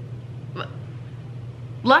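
A pause in a woman's talk filled by a steady low room hum, with one faint short breathy sound about half a second in; her voice comes back near the end.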